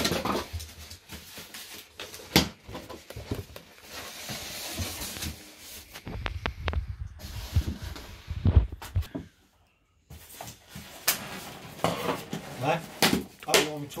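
Cardboard statue box being handled and opened: scrapes, rustles and sharp knocks of card, with low talk in the background. The sound cuts out completely for about half a second past the middle.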